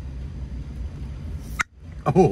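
Metal twist cap of a glass drink bottle being turned off, with one short sharp pop or snap about one and a half seconds in, over a steady low rumble inside a vehicle cabin.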